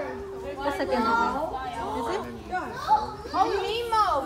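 Several children's voices talking and calling out over one another, with no clear words.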